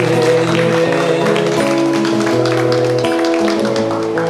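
A song with a man singing to a strummed acoustic guitar.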